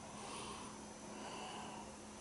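A person sniffing beer held up to the nose in a glass: a faint, drawn-out inhale through the nose, with a low steady hum underneath.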